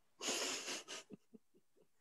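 A woman's breathy, voiceless laugh: a rush of breath lasting under a second, followed by a few short faint puffs.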